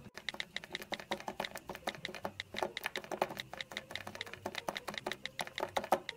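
Rapid typing: a steady run of quick key clicks, several a second.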